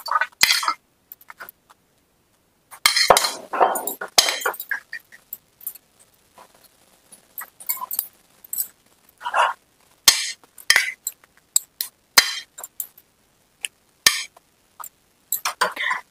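Cumin seeds crackling and sizzling in hot oil in a metal kadai: irregular sharp pops and short sizzles with quiet gaps between.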